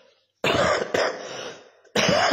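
A person coughing: a sudden harsh cough about half a second in, a second about half a second later, and another starting at the very end.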